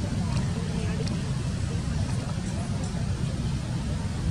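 Outdoor background: a steady low rumble with faint, scattered distant voices or calls over it.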